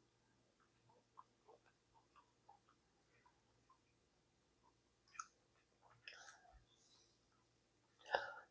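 Near silence, with faint chewing and small mouth clicks scattered throughout and a couple of slightly louder soft clicks about five and six seconds in.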